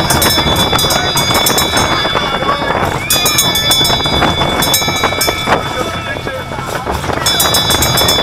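Steel junior roller coaster train running along its track: a continuous loud rumble and rattle of wheels on the rails. Riders' voices are heard over it.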